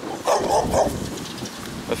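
Large mastiff-type dogs barking, two barks in quick succession within the first second.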